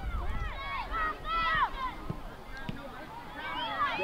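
Distant, high-pitched shouts and calls from youth soccer players and sideline spectators, several voices overlapping, loudest about a second and a half in and again near the end.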